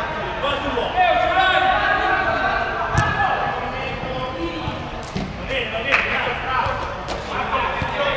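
A five-a-side football kicked on an indoor artificial-turf pitch, a sharp thud about three seconds in and another near six seconds, among players' shouts echoing in the large hall.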